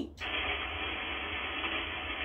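HF transceiver's speaker hissing with 20-meter single-sideband band noise, which comes in just after the microphone is released: the receiver is back on and no station is answering yet. A steady hiss with a sharp top, over a faint low hum.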